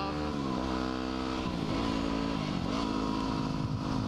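Yamaha WR250R 250 cc single-cylinder dual-sport engine running at road speed. The engine note falls about half a second in and dips and wavers again around two seconds, as the rider clutches for a seventh gear that the six-speed gearbox doesn't have, then it pulls steadily again.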